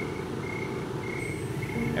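Crickets chirping in short, evenly spaced high pulses, roughly one and a half a second, over a steady low background rumble.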